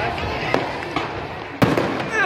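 Fireworks exploding overhead: a few sharp bangs over a crackling haze, the loudest about one and a half seconds in.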